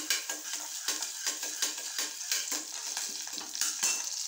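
Food frying in hot oil in an aluminium pressure cooker, a steady sizzle with many quick scrapes and clicks of a utensil stirring it against the pan.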